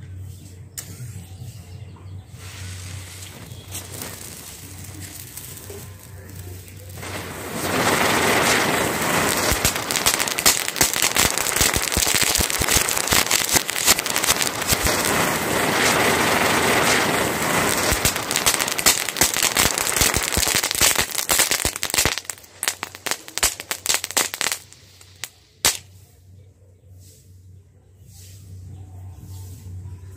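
Diwali ground fireworks burning: after a few quiet seconds, a loud hissing shower of sparks with dense crackling starts about eight seconds in and runs for some fourteen seconds. It ends in a quick run of sharp pops and bangs that dies away a few seconds later.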